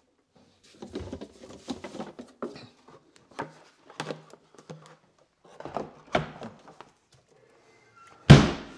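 Handling noise as a frozen charging station and its coiled cable are lifted out of a chest freezer and hung on a wall mount: a string of irregular knocks, clunks and rustles, loudest about six seconds in.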